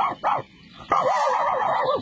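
Excited cartoon dog barking twice, then a longer wavering whine.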